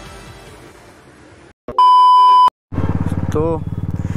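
Background music fades out, then a loud, steady electronic beep sounds for just under a second. After a brief gap, a Royal Enfield Classic 350's single-cylinder engine starts being heard, running with steady, evenly spaced exhaust pulses.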